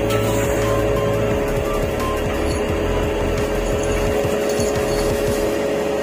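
Background music: a steady held chord of two sustained notes over a soft hiss.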